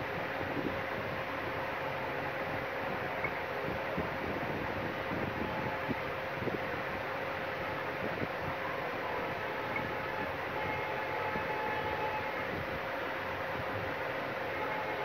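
Steady mechanical hum and rush with a faint held tone throughout; no single sound stands out.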